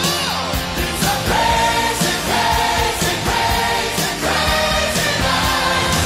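Hard rock music with drums and electric guitar. A series of held sung lines, backed by harmony voices, comes in about a second in.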